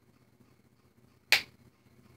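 A single sharp snap, like a click, a little over a second in, with a brief ring after it, over faint room tone.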